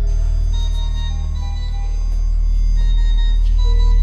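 Ambient soundtrack music: a deep, steady low drone with short, thin high tones coming and going over it.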